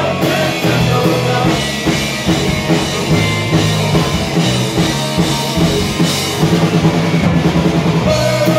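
Live garage rock band playing loud: drum kit, electric bass and electric guitar, with a quick run of drum hits near the end.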